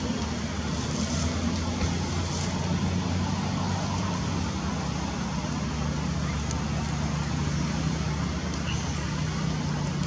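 Steady low motor hum with a constant rumble and background noise underneath, unchanging throughout.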